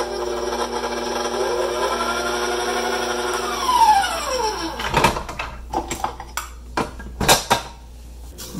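KitchenAid Professional 600 stand mixer running with its wire whisk, briefly beating frozen shredded butter into the dough. About four seconds in the motor is switched off and its whine falls in pitch as it spins down. A few sharp clicks and knocks follow.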